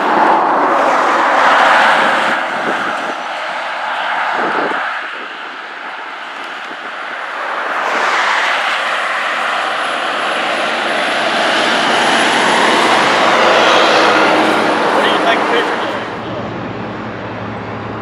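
Engine noise of passing vehicles, swelling and fading twice: loud about a second in, quieter for a couple of seconds around the middle, then building to a long second peak before easing near the end.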